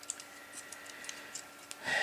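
Faint, scattered light clicks and taps as a copper-jacketed rifle bullet and digital calipers are handled, over a faint steady hum.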